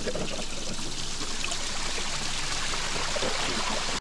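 Bath tap running into a filling bathtub, a steady splashing rush of water, with the tub's supply coming only from a pressurized diaphragm buffer tank while the mains water is shut off.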